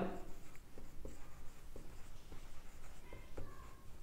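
Marker pen writing on a whiteboard: faint, irregular taps and strokes as letters are written.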